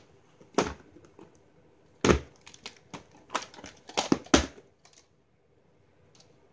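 A plastic VHS cassette being slid out of its cardboard sleeve and handled: a series of sharp knocks and scraping, rustling sounds.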